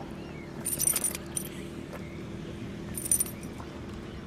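Metal tag and ring on a puppy's collar jingling in two brief bursts as it moves its head, about a second in and again near the end, over a steady low hum.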